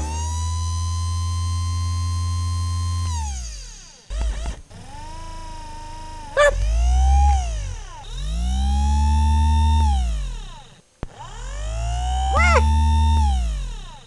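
Synthesized electronic whirring tones over a deep hum, the cartoon servo sound of a moving robotic arm. There are about four long whirs, each gliding up, holding and falling away, with two quick up-and-down chirps in between.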